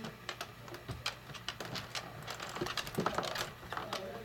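Irregular light clicks and ticks, several a second, over a faint low steady hum.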